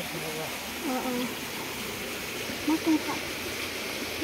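Piglets in a wooden pen giving a few faint, short calls, about a second in and again near three seconds, over a steady low hiss.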